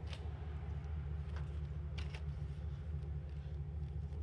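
Pickup truck engine idling with a steady low hum, and a few light clicks as the electric trailer jack's power cord is handled and plugged into the truck.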